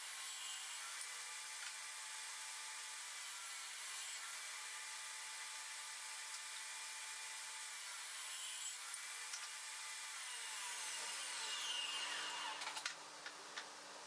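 Benchtop table saw running and cutting a wooden base piece, heard faint and thin. Near the end the saw is switched off and its whine falls in pitch as the blade spins down, followed by a few light clicks.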